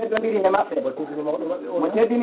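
A man's voice speaking in a religious address, with the pitch rising and falling continuously.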